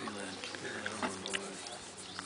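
A black rhino giving a low, drawn-out call while its forehead is scratched by hand; the call fades out near the end.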